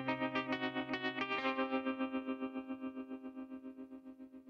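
Closing chord of the music: a held, effects-laden guitar chord pulsing rapidly and evenly. Its low bass note drops out about one and a half seconds in, and the chord fades away.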